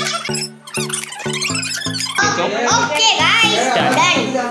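Background music with a steady repeating beat of pitched notes, about three a second. About halfway in, lively voices, among them a child's, come in loudly over the music.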